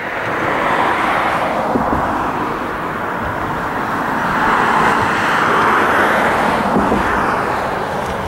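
Road traffic passing close by: a steady rush of tyre and engine noise that swells as vehicles go past, loudest about five to six seconds in.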